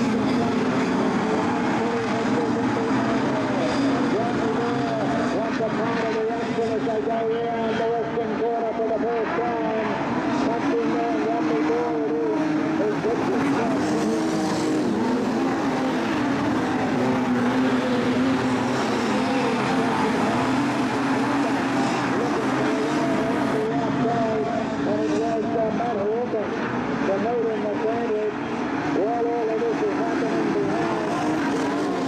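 A field of modified sedan speedway cars racing together on a dirt oval, their engines running hard in a steady, dense mix of many overlapping engine notes that waver in pitch as the cars go through the turns.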